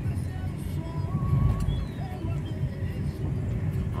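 Steady low rumble of a small car's engine and tyres on asphalt, heard from inside the cabin, with faint music over it.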